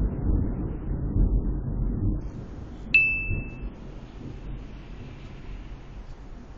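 Low rumble of distant thunder fading away over the first two seconds, then a single bright ding that rings briefly about three seconds in.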